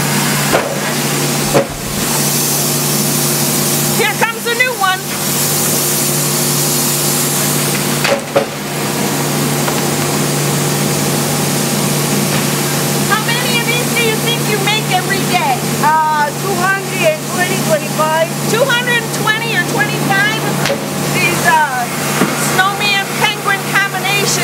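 Plastic molding machine running with a steady hum, releasing loud hissing blasts of air for a few seconds at a time in the first third, with a couple of sharp knocks. Voices chatter in the background through the second half.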